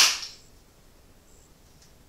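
A single sharp hand clap at the very start, trailing off briefly in the room, followed by quiet room tone.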